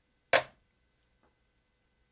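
A folding pocket knife with G10 handle scales set down on a digital kitchen scale's metal platform: one sharp clack about a third of a second in, then a faint tick about a second later.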